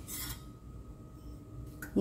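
A brief metallic scrape or clink from a steel kadai on the stove in the first moment, then only a faint low background hum and a small tick just before the end.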